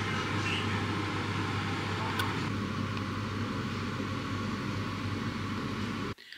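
Steady machine hum with an even rushing noise underneath, and one faint click about two seconds in.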